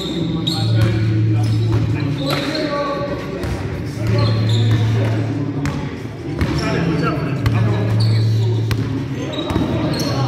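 A basketball bouncing on a sports-hall floor in a full-court pickup game, with sneakers squeaking, players calling out and a lot of hall echo. A low hum comes and goes every few seconds underneath.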